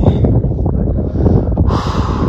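Wind buffeting the microphone in uneven, heavy gusts, with a brief brighter rustle near the end.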